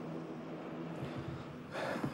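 Steady background noise of city traffic, then a quick sharp intake of breath near the end.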